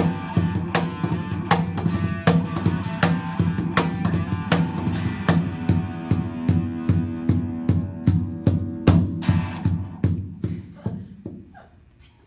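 Electric guitar and cajón playing a slow blues intro: a low guitar riff over steady cajón strokes about every three-quarters of a second, dying away near the end.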